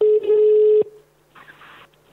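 Telephone ringback tone heard over a phone line as a call is placed: one steady tone lasting a bit under a second, followed after a pause by a brief burst of line noise.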